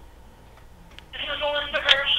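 A remote participant's voice over a conference speakerphone, thin and cut off in the highs as on a phone line, starting about a second in. A sharp click comes just before the end.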